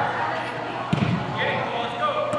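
A soccer ball kicked once, a single sharp thud about a second in, with shouting voices around it.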